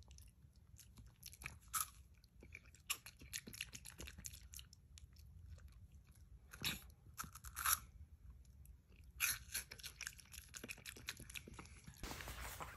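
Chewing of a crunchy snack close to the microphone: faint, irregular crunches, with louder bursts of crunching a few times.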